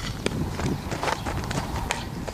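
Running footsteps of softball cleats on a dirt infield, a quick series of short steps, with a sharper tap at the start and another near the end.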